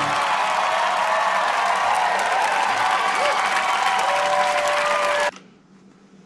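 Studio audience applauding and cheering at the end of a live song, with shouts over the clapping; it cuts off abruptly about five seconds in.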